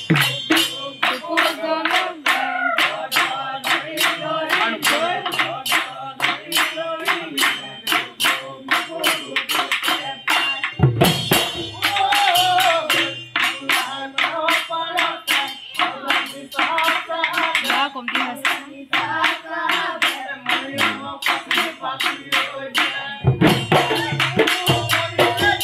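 Assamese Husori singing: a group of men singing in chorus over a fast, even beat of dhol drum and sharp cymbal or clap strikes, with a few deep drum strokes standing out.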